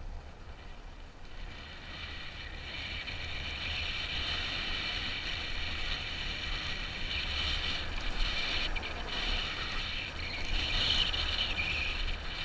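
Dirt bike engine running under way, its high-pitched drone rising in level about two seconds in and staying strong, over a steady low rumble.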